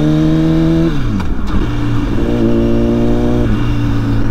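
A 2006 Honda CBR1000RR's inline-four, through an aftermarket Jardine exhaust, heard loud from the rider's seat. The pitch climbs slowly for about a second, then the revs drop sharply, hold at a steady lower note, and drop again near the end.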